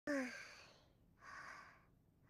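A sleeping girl's sighs: a short voiced murmur falling in pitch that trails off into a breathy exhale, then a second soft breathy sigh about a second later.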